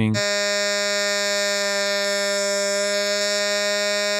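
A vocal note auditioned in Logic Pro's Flex Pitch, sounding as one steady, buzzy held tone with no wavering while its fine-pitch setting is dragged.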